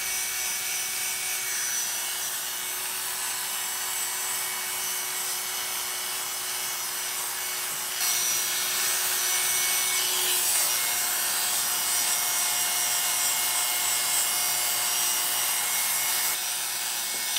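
Oster Classic 76 hair clipper with a number two blade running steadily as it cuts hair close up the back of the head. About eight seconds in the sound gets a little louder and its pitch changes as the blade works a new area.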